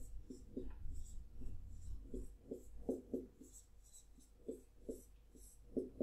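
A dry-erase marker writing on a whiteboard: about a dozen short, irregular squeaky strokes as the characters of a matrix are written.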